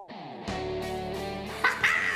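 A sound effect sliding downward in pitch, then background music with held notes starting about half a second in. A short, high-pitched whoop comes near the end.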